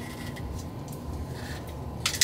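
Faint rubbing and scraping of fingers working at a small plastic case, trying to pry it open.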